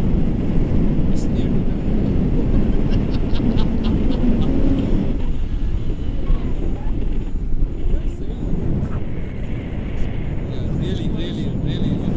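Wind rushing over an action camera's microphone during a tandem paraglider flight: a steady low rumble.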